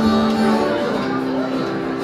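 Live rock band playing, with strummed guitar chords ringing over held notes; the chord changes partway through.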